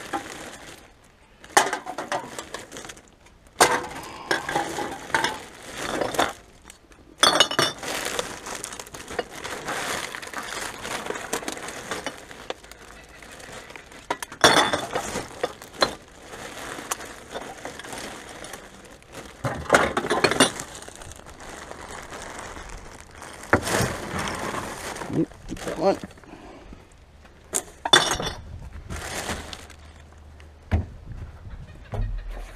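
Empty beer cans and glass bottles clinking and clattering against each other in irregular bursts as they are handled and sorted from plastic bags.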